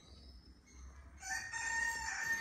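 A rooster crowing, heard faintly: one long held note that starts just past halfway and is still going at the end.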